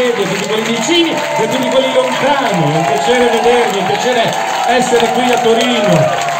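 A large concert crowd singing together, many voices at once and loud.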